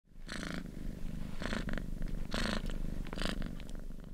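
A domestic cat purring, a steady low rumble that swells with each breath about once a second.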